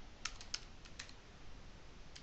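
Faint keystrokes on a computer keyboard: a handful of separate key taps as a short word is typed.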